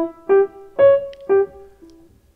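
Grand piano (a Steinway) playing a short single-line melody, about one note every half second, with the third note jumping higher and sounding loudest: the 'top note' meant to sound unexpected. The last note is softer.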